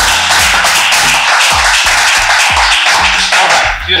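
Loud applause over background music with a deep bass that slides down in pitch. The applause stops just before the end.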